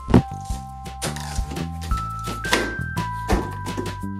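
Background music with held notes and a light beat. Just after the start comes one sharp thunk, which fits the rubber-band-powered cardboard frog snapping shut and landing on the cutting mat.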